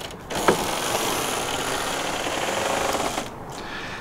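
Heavy rear ramp door of a toy hauler being lowered by hand on its hinges and support cables. It gives a steady, rapid mechanical rattle for about three seconds, with a single click about half a second in.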